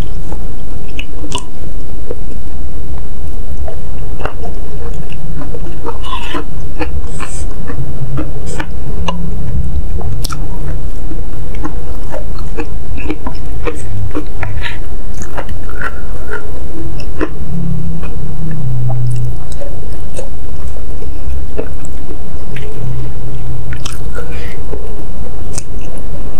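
Close-miked chewing and wet mouth sounds of eating a spicy meatball soup with noodles, with scattered short clicks from a wooden spoon and fork against the ceramic bowl.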